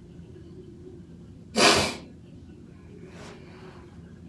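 A woman sneezing once, loudly and suddenly, about one and a half seconds in, followed a second or so later by a much fainter breathy sound.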